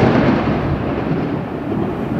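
Thunder: a sudden clap right at the start that carries on as a low rolling rumble, easing off slowly.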